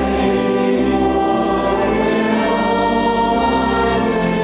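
A church hymn sung by many voices with instrumental accompaniment, in long held notes.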